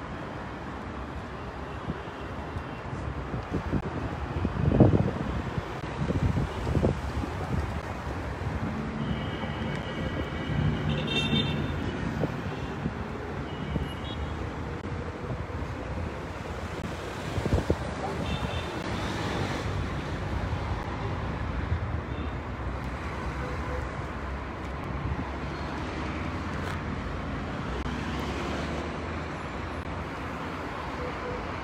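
Street ambience of road traffic running steadily, with faint indistinct voices. A few louder low thumps come about five and seven seconds in.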